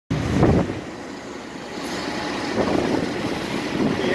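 Low, steady outdoor rumble with no voices, swelling briefly about half a second in and rising again after two and a half seconds.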